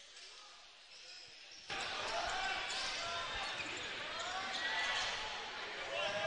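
Basketball being dribbled on a hardwood court, with court noise and crowd voices in a large gym. It starts faint, and the court sound comes up suddenly a little under two seconds in.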